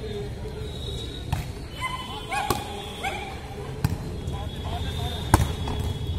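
Volleyball being struck during a rally: four sharp slaps of the ball spread over a few seconds, the last, about five seconds in, the loudest. Voices call out in the background.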